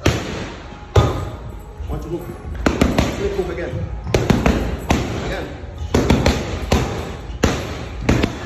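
Boxing gloves striking leather focus mitts: a single punch about a second in, then quick combinations of two to four sharp smacks, denser in the second half.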